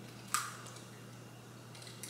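An egg being cracked open by hand: one sharp crack of the shell about a third of a second in, then a few faint shell ticks near the end.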